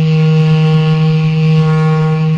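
Background music: one low note held steadily on what sounds like a wind instrument.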